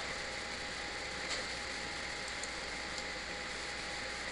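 Steady background hiss with a faint, even whine underneath; no strike or other distinct event.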